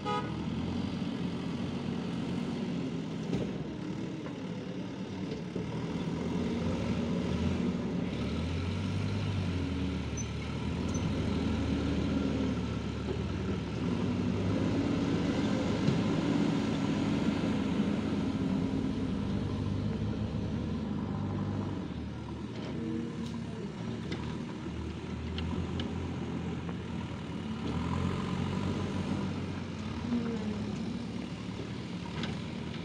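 JCB 3DX backhoe loader's diesel engine working under changing load, its revs rising and falling as the loader lifts, dumps and drives. It runs loudest in the middle, eases off for a few seconds later on, then picks up again near the end.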